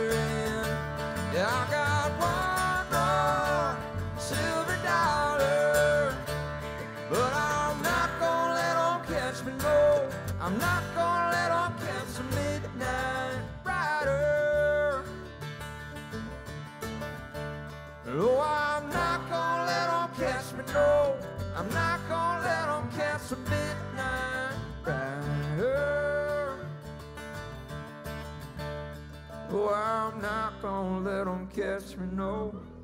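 Live bluegrass string band playing a song: banjo, mandolin, acoustic guitar and upright bass under male singing.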